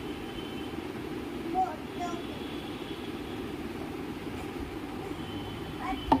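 Steady low background rushing hum, with two faint short sounds a little under two seconds in.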